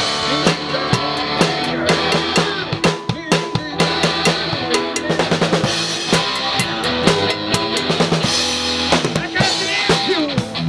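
A live rock band playing, with the drum kit closest and loudest: kick drum, snare and cymbals keep a busy beat under electric guitars and bass guitar.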